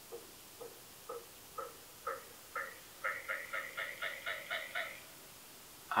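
Faint short chirping tones from the music video's soundtrack, about two a second at first, then a faster, louder run of about four a second before stopping about a second before the end.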